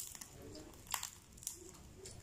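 Crisp fried pork skin of a crispy pata crackling as fingers break it apart: three short sharp cracks, the loudest about a second in.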